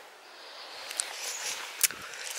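Faint steady background hiss, with a small click about a second in and a sharper click near the end.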